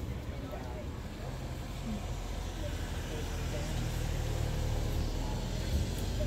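Outdoor background sound: a steady low rumble with faint, distant voices.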